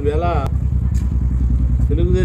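A steady low rumble, with a brief bit of a man's speech at the start and a couple of faint clicks.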